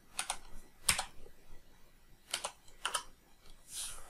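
Computer keyboard keystrokes: about six separate, unhurried clicks, a pair near the start, one about a second in, a pair around two and a half seconds and another near three seconds, as a number is typed into a field.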